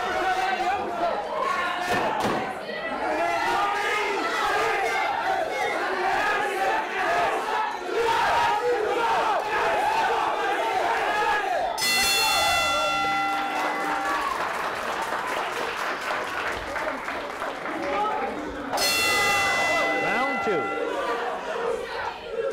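Boxing ring bell struck twice, once about halfway through and again about seven seconds later, each ring lasting about two seconds. The first comes as the round clock runs out, marking the end of the round. Under it, gym spectators shout and chatter throughout.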